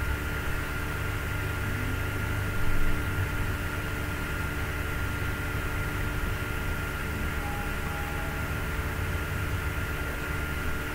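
Steady background noise: hiss and low hum with a thin, steady high-pitched tone, and a brief low swell a little under three seconds in.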